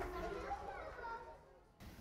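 Faint child's voice sounds in the first second, then drops to near silence shortly before the end.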